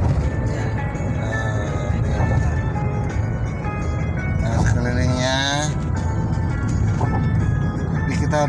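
Steady low road and engine rumble inside a moving car's cabin, with music playing over it: held instrumental notes and a singing voice holding a wavering note about five seconds in.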